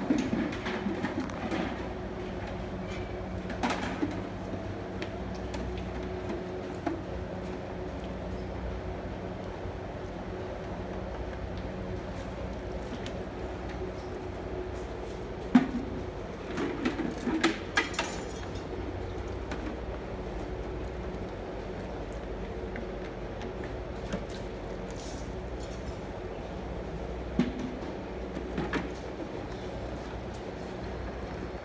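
Plastic calf-feeding buckets knocking and clattering as they are picked up, set down and handled on a concrete floor, in scattered bursts with the loudest knock about halfway through. A steady mechanical hum runs underneath.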